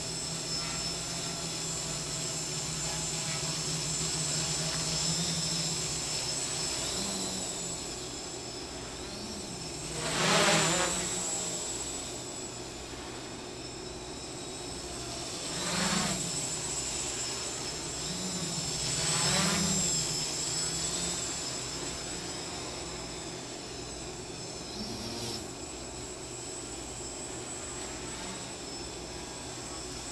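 X525 quadcopter's electric motors and propellers buzzing in flight, the pitch wavering as the motor speeds change. The sound swells louder three times: about ten seconds in, at sixteen seconds and at nineteen seconds. The motors carry a vibration that the pilot says he can hear and still needs to fix.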